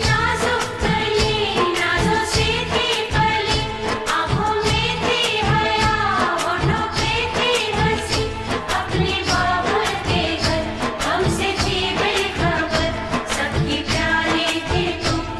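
Hindi film song: a singer's melody over a full accompaniment with a steady rhythm.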